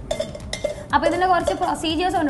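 Metal spoon stirring in a cooking pot, scraping and clinking against its sides, with a voice speaking over it from about a second in.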